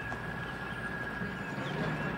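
Pickup truck driving past over rough ground: a steady rumble of engine and tyres that grows slightly toward the end, with a thin steady high tone over it.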